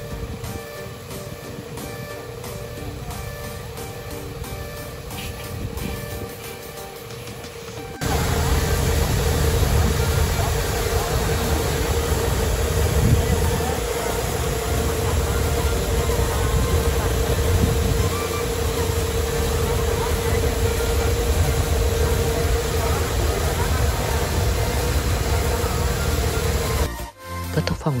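Background music, then about eight seconds in a Kubota L5018 tractor's diesel engine running steadily under load, driving a boom sprayer's pump through the PTO, with a steady hum over a low rumble and the hiss of spray.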